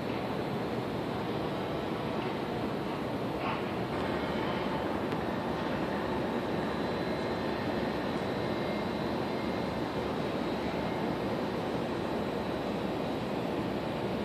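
Steady, even rushing outdoor noise of open air and distant city hum heard from a high lookout, with no distinct events.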